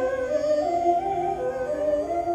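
Carnatic bamboo flute playing a melody that steps and slides between notes, with a violin following it in accompaniment. The phrase comes in louder right at the start after a brief dip.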